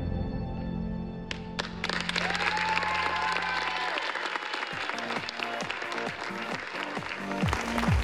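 Theatre audience applauding, the clapping starting about a second in as the dance music fades out; a different music track comes in about halfway through.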